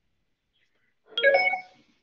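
A single short bell-like chime with several pitches ringing together. It strikes suddenly about a second in and fades within about half a second.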